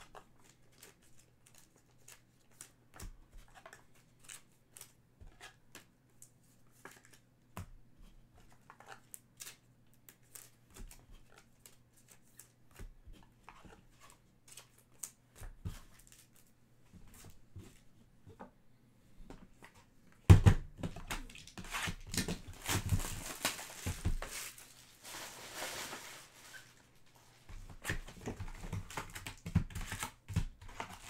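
Faint scattered ticks and taps of trading cards and packaging being handled, then, about two-thirds of the way through, a sharp thump followed by several seconds of tearing and crinkling as a sealed box of trading cards is unwrapped and its lid opened.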